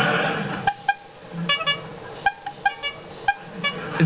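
Studio audience laughter dying away under a second in, then a run of about a dozen short, high-pitched squeaky toots spread unevenly over the next three seconds.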